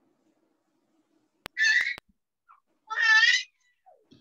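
A cat meowing twice, two short high-pitched calls about a second apart, the first just after a faint click.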